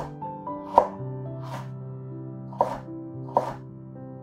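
Chef's knife chopping carrots on a wooden cutting board: four sharp strokes, about one a second, over background music with held notes.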